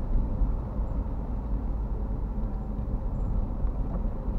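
Steady low rumble inside a moving car's cabin: engine and tyres on a wet road.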